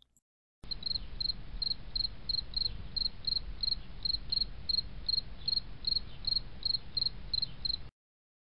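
A cricket chirping in a steady rhythm, about three short high chirps a second, over a low rumble; it starts about half a second in and cuts off suddenly near the end.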